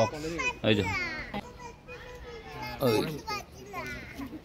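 Children's voices calling and shouting, several short high calls that slide up and down in pitch.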